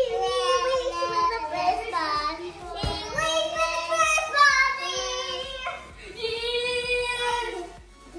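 Children singing a wordless melody with several long held notes, with short breaks between phrases.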